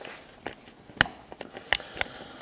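A few sharp, irregular clicks and knocks of handling noise, the loudest about halfway through, over a quiet room.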